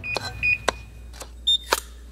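Short high electronic beeps and sharp clicks about half a second apart, over a low steady hum.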